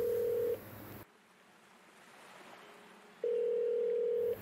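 Steady electronic beep tone that cuts off about half a second in. Near silence follows, then the same tone sounds again a little after three seconds.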